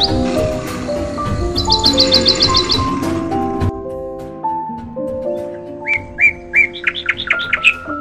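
Bird chirping over background music: a rapid high trill of chirps in the first few seconds, then a run of separate chirps near the end.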